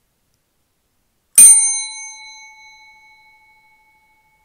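A single bell chime struck once about one and a half seconds in, its clear metallic ring fading away over the next two seconds.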